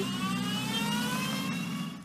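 Small car's engine revving as the car pulls away, its pitch climbing steadily, then fading out near the end.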